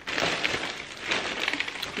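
Clear plastic drawstring bag crinkling and rustling as hands open it and dig around inside.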